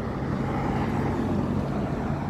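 Road traffic: a car driving past, a steady low engine hum with tyre noise.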